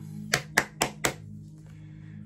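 Four sharp taps about a quarter second apart, tarot cards being laid down one after another on a table, over quiet background music.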